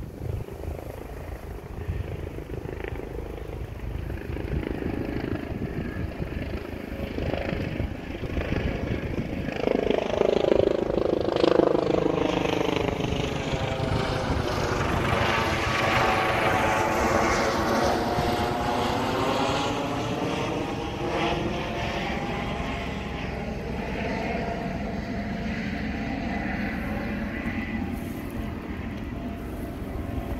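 An airplane passing low overhead: its engine noise swells over several seconds, is loudest around the middle, and fades slowly, over a steady low rumble.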